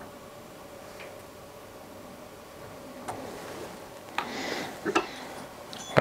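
A few faint, sparse metallic clicks and ticks, with a short rustle about four seconds in, from a small Allen wrench tightening the set screw that locks a new rear night sight into a pistol slide's dovetail.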